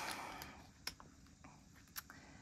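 A few faint, separate clicks and light rustles from clear plastic zip pouches being turned in a small ring-binder budget wallet.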